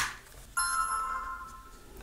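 A sharp click, then about half a second later the Vava dual dash cam's power-up chime: an electronic tone of several pitches held for about a second and a half and fading out, signalling that the camera has switched on.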